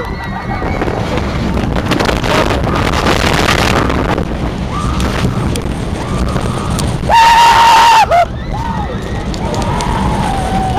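Roller coaster train running on its steel track at speed, with wind buffeting the microphone throughout. About seven seconds in a rider gives one long high scream, followed by a short cry.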